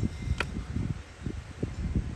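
A trail camera's plastic case being opened by hand: one sharp click about half a second in as the latch lets go, then a few soft handling knocks over a low rumble.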